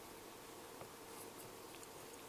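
Very faint scratching with a few light ticks: a Phillips screwdriver turning a screw into the plastic back cover of a handheld multimeter.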